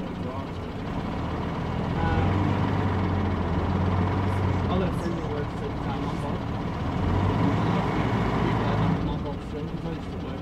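Diesel engine of an MK II city bus running as it approaches, a steady low hum that swells about two seconds in and drops away near the end, over street traffic noise.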